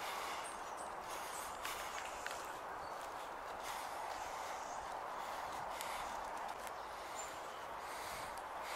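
Footsteps of a person walking on a dirt path, with irregular faint steps over a steady rushing sound from a fast-flowing brook alongside.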